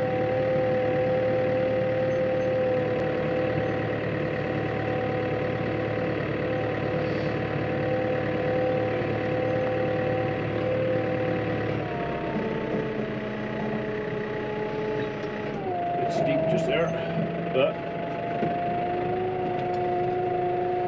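Tractor engine running steadily, heard from inside the cab while pulling a lawn roller. Its steady drone drops in pitch twice, about twelve seconds in and again a few seconds later.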